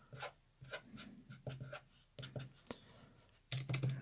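Felt-tip marker writing on paper: a series of short, faint scratching strokes.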